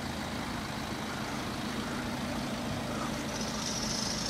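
BMW X5's two-litre twin-turbo engine idling, a steady low hum with one constant tone.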